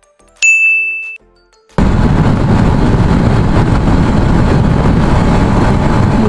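The riding noise cuts out abruptly, and in the silence a short high electronic ding, one held tone, rings for under a second. About two seconds in, the sound of the motorcycle ride returns just as suddenly: engine and wind rushing over the microphone.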